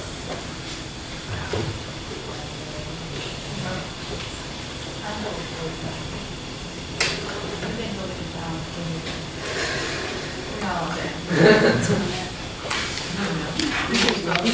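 A murmur of several people talking among themselves in a room, voices overlapping over a steady hiss, with one sharp click about halfway through and a louder voice a little before the end.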